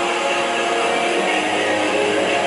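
Handheld hair dryer running steadily, blowing on hair, with a faint hum under the even rush of air.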